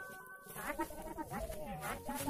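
Faint human voices.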